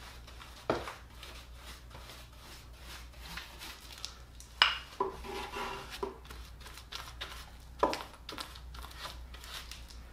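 A paintbrush scrubbing resin onto the bare wood inside a wooden box, with dry-sounding brush strokes throughout. A few sharp knocks come about a second in, near the middle and near the end.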